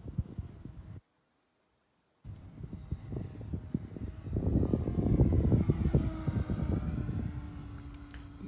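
Electric RC Spitfire warbird on a 5S battery flying past, its motor and propeller sound swelling to a peak about five seconds in and then fading, over a low rumble. The sound cuts out completely for about a second near the start.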